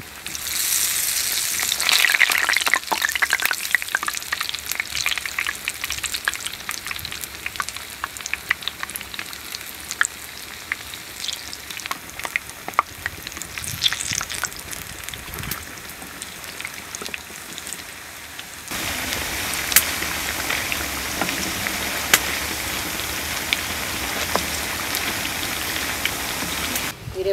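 Raw banana bajji, battered slices deep-frying in hot oil: a steady sizzle full of small pops and crackles. It flares up in the first couple of seconds as fresh pieces drop into the oil, and grows louder again about two-thirds of the way through.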